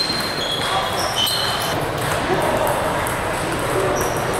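Table tennis rally: the ball clicks off the paddles and bounces on the table in quick strokes. Hall chatter and other tables' play echo behind it.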